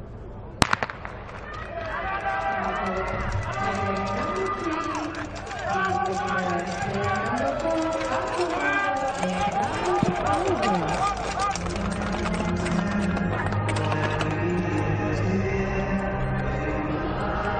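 A starter's gun fires once, a single sharp crack about half a second in, starting a speed-skating race. Then music with a pitched, voice-like line plays for the rest of the stretch.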